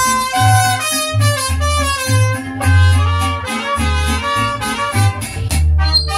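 Mariachi band playing an instrumental passage: a lead melody over guitars and a deep bass line.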